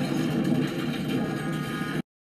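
A loud, steady low rumble with an engine-like noise that cuts off abruptly at the end.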